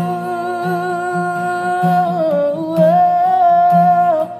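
Male vocalist holding a long sung note in a Malay pop ballad over guitar accompaniment; the note dips in pitch a little past halfway and rises back up.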